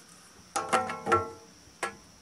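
A spirit level set down on a black steel angle-iron wall bracket: a quick cluster of ringing metallic knocks about half a second in, then one more click near the end.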